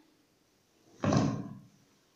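A single loud thump about a second in, dying away within half a second, as the plastic tub of shea butter leave-in conditioner is handled.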